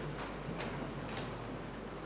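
Quiet room noise with a few faint, sharp ticks about half a second apart.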